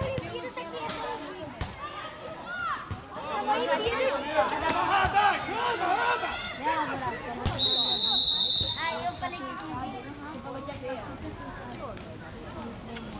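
Spectators and players talking and shouting over one another, then a referee's whistle sounds one steady blast of about a second, stopping play.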